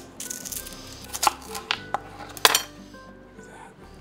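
A kitchen knife slicing through a garlic clove on a plastic cutting board: three sharp taps of the blade on the board, about a second apart, over quiet background music.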